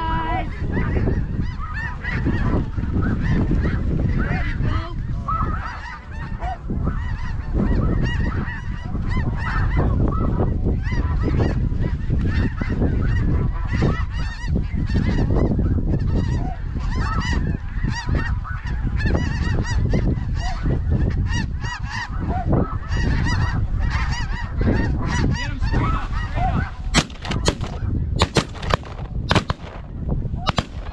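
A large flock of snow geese calling constantly overhead, a dense clamour of many overlapping honks. Near the end a few sharp bangs cut through, as shotguns open on the flock.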